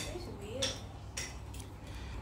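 A few short clinks of cutlery against dishes over a low steady room hum.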